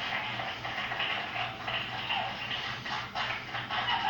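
A small group clapping, heard through a television speaker, after a band's song has ended.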